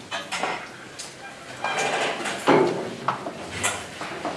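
Scattered knocks and clicks of objects being handled, with faint voices. The loudest knock comes about two and a half seconds in.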